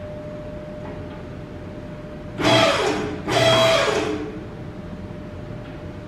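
Hydraulic two-post lift's electric pump motor running in two short bursts, each under a second and about a second apart, as the lift is raised with an engine hanging from it.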